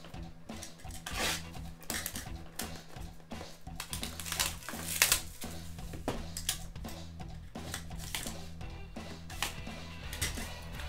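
Shrink-wrap being stripped off sealed trading-card hobby boxes and the cardboard boxes handled on a table: many short crackles, rustles and knocks, the loudest about halfway. Background music with a steady low bass line plays underneath.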